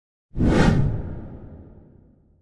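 Logo-reveal whoosh sound effect with a deep low end, starting suddenly about a third of a second in and fading away over the next second and a half.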